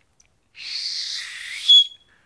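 Person doing a no-finger mouth whistle: about a second of breathy hiss of air forced over the teeth, which near the end sharpens into a brief, loud, high-pitched whistle tone.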